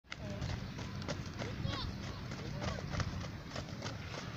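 Players at training: distant voices calling out over many quick knocks and footfalls, with a steady low rumble underneath.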